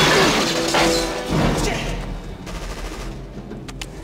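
Action-film sound mix: gunfire and bullets smashing into boxes, with debris shattering, loud at the start and fading over the first second or so. Orchestral score plays underneath, and a few sharp knocks come near the end.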